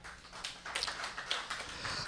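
Faint, irregular taps and clicks, several a second, growing slightly louder through the pause.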